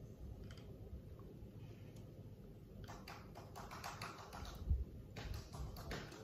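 Light clicks and taps of hands handling an aluminium smartphone video cage with a phone in it, with a slightly louder knock about three-quarters of the way through.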